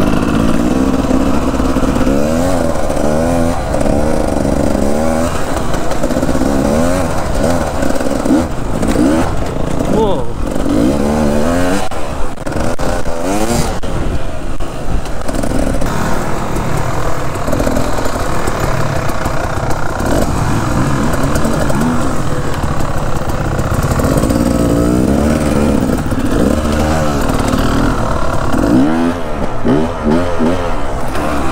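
Enduro dirt bike engine heard up close from on the bike, its pitch rising and falling over and over as the throttle is opened and closed along the trail.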